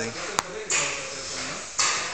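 Seam ripper picking at the stitching of a soft-top's rear-window seam: one sharp click about half a second in, then two scratchy scraping sounds, the second near the end. The ripper is one its user calls blunt.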